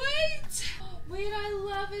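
A woman singing a short, playful sung phrase with no clear words: a rising note at the start, then a long held note for about the last second.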